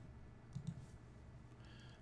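Two faint computer mouse clicks a little past half a second in, over low room hiss.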